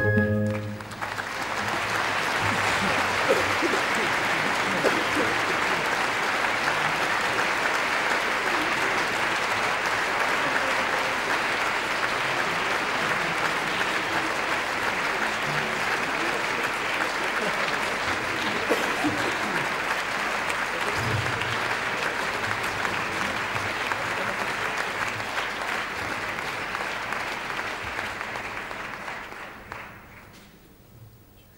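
Theatre audience applauding steadily, just after the closing note of the music at the very start; the applause dies away near the end.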